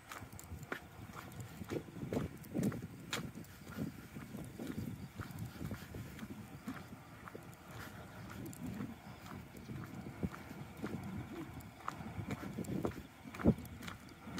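Footsteps of a person walking at a steady pace along a concrete station platform, with one sharper knock near the end.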